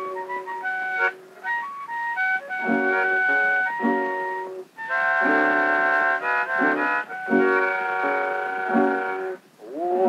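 Harmonica and guitar instrumental break on a 1925 acoustic-era 78 rpm shellac record. The harmonica plays held chords and short runs over guitar strums.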